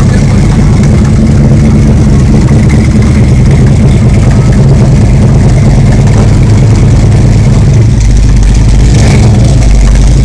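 Big-motor V8 in a Pontiac Trans Am idling loudly and steadily through its dual exhaust, with a deep rumble.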